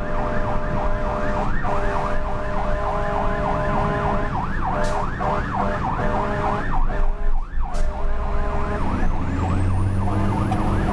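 A fire truck's siren yelping rapidly, heard from inside the cab, with long blasts of a steady horn sounding over it and the diesel engine rumbling beneath. The horn breaks off briefly a little before halfway and again near the end.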